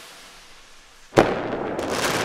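Logo-reveal intro sound effect: the fading tail of a whoosh, then a sudden sharp hit just past a second in that rings on and slowly dies away, with a faint crackle.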